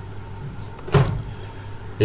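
A steady low electrical hum with one short click about a second in.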